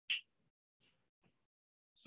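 A single short, sharp click just after the start, then two much fainter ticks a little under a second later, with little else.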